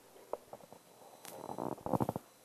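Quiet room tone in a lull at a press conference: a few faint clicks, then a soft, indistinct sound growing near the end.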